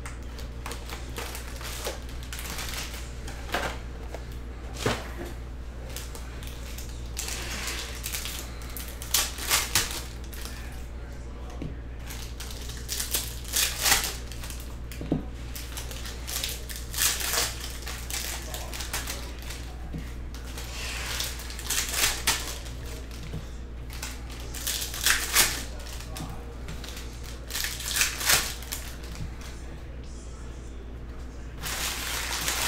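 Foil trading-card pack wrappers being crinkled and torn open by hand, in short bursts of crackling every few seconds, over a steady low hum.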